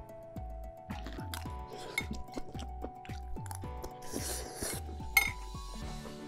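Soft background music with sustained tones and a low, pulsing beat, under light clinks and taps of dishes and utensils on a table. A short noisy burst comes about four seconds in, and a sharp click just after five seconds.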